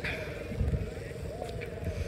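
A car's engine running with a low, steady hum as the car drives slowly.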